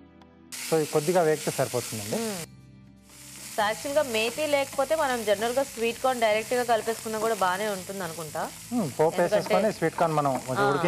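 Sweet corn kernels and fenugreek leaves sizzling in oil in a frying pan as a spatula stirs them, a steady hiss with a short break about two and a half seconds in.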